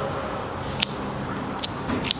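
Two short, sharp clicks, about a second in and again near the end: a small handmade pocketknife's blade being flicked and snapping back shut under its spiral titanium spring.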